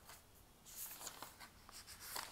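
Faint scratching and rustling sounds with small ticks, starting about half a second in; otherwise close to silence.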